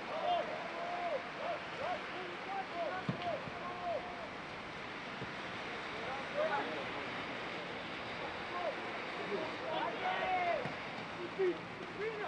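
Scattered short shouts and calls from footballers across an open pitch, over a steady background hiss.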